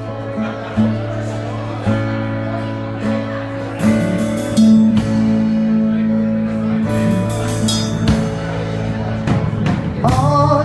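Live band playing an instrumental passage on electric bass and acoustic guitar, with drum and cymbal hits coming in about four seconds in and again near seven seconds.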